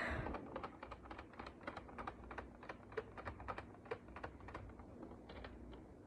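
Faint, irregular light clicks and taps of hands handling a boxed Funko Pop figure, several a second.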